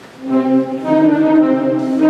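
A wind band strikes up a Spanish Holy Week processional march, coming in suddenly about a quarter second in with loud, sustained brass chords after a faint room hush.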